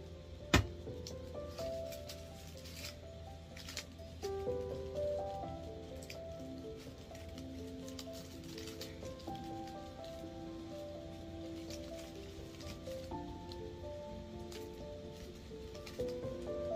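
Soft instrumental background music with slow held notes, with one sharp knock about half a second in and a few light handling clicks.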